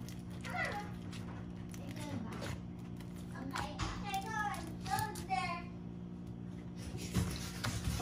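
A young child's high, sing-song voice in the background, over a steady low hum, with a few faint knocks from a plastic spatula cutting into lasagna in a foil pan.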